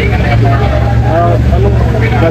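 Steady low hum of a large ventilation fan, with people talking over it.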